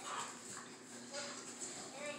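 Two dogs play-wrestling, making a few short, faint vocal sounds.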